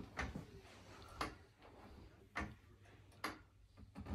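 Jazzy power wheelchair giving four faint, sharp clicks about a second apart as it starts and stops in a tight turn, over a quiet room.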